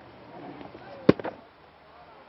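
Cricket bat striking the ball with one sharp crack about a second in, followed by a couple of fainter clicks. It is a mistimed swing: the ball comes off the top edge of the bat and goes straight to a fielder.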